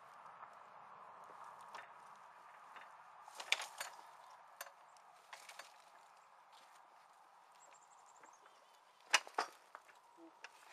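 Knocks and clanks from the steel frame, lever and seat of an Oliver 23A horse-drawn sulky plow as a man works the lever and climbs onto the seat, with a cluster of sharp clacks about three and a half seconds in and the loudest ones near the end.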